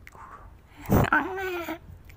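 A small dog, a Pomeranian, gives a short whining cry about a second in, held on one pitch for about half a second.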